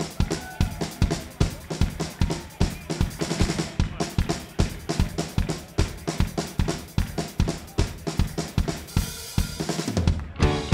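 Live rock drum kit solo: rapid, steady kick drum and snare strokes with tom fills. A cymbal wash builds in the last second.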